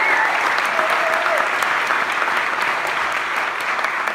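Large indoor audience applauding steadily, a dense wash of clapping with a few voices calling out over it near the start.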